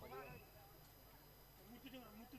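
Near silence, with a faint, brief pitched voice-like sound in the first half-second.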